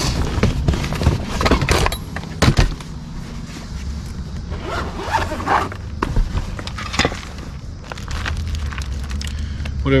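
Items being handled and rummaged in a cardboard box: rustling plastic and bags with several sharp knocks, the loudest about two and a half seconds in. Toward the end a zippered hard case is unzipped and opened. A steady low rumble runs underneath.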